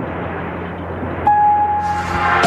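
Synthesized logo sting sound effect: a low rumbling whoosh with a steady drone, joined just after halfway by a sustained high tone as it swells in loudness.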